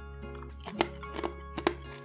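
Background music with a steady low bass. Over it come a few irregular sharp crunches of hard rye croutons being bitten and chewed.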